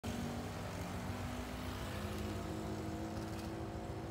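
A motor vehicle engine running steadily, a low hum whose pitch sinks slightly over the first two seconds.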